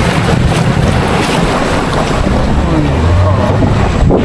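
Small river boat's outboard motor running steadily under the boat way, with heavy wind buffeting the microphone and water rushing past the hull.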